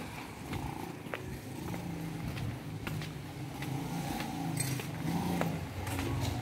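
Low, rough drone of a motor vehicle engine running close by, slowly growing louder, with faint clicks from the phone being handled.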